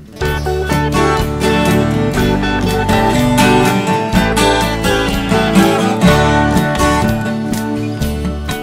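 Twelve-string acoustic guitar strummed and picked through an instrumental song intro, over a backing track with a steady bass line. The music comes in suddenly at the very start and carries on at an even level.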